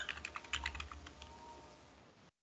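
Computer keyboard typing: a quick run of key clicks that thins out after about a second, over a faint low hum.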